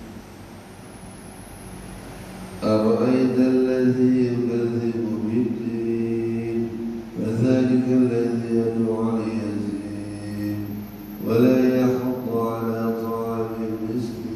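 An imam's solo voice reciting the Quran aloud in a melodic chant while leading the dawn prayer. There are three long, drawn-out phrases, starting about three, seven and eleven seconds in.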